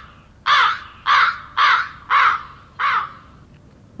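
Comedic crow-cawing sound effect: five harsh caws about half a second apart, trailing off about three seconds in.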